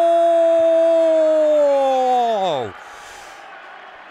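A male TV football commentator's long drawn-out goal call, one vowel held on a steady pitch, then sliding down and breaking off just under three seconds in. Only a faint background hiss follows.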